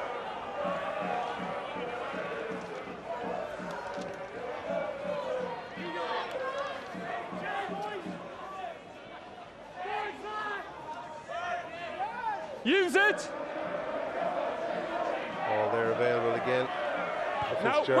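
Rugby players shouting calls to each other around a ruck and maul, over faint crowd noise from the stands. There is a loud, high call about two-thirds of the way through.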